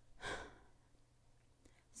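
A woman's sigh: one short breath out, lasting about half a second.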